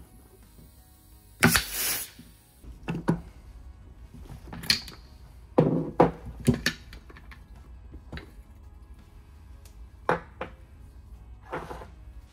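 A short blast of compressed air hissing into a racing brake caliper to push its pistons out, followed by several sharp knocks and clunks as the metal caliper and loosened pistons are handled in a plastic tray.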